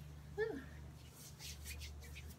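A woman's short "ooh", then faint soft swishes of hands rubbing oil over a bare foot, over a steady low hum.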